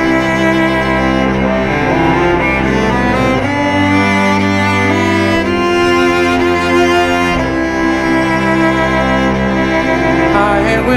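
Bowed cello playing a slow instrumental passage of long held notes in chords, the low note changing about every four seconds.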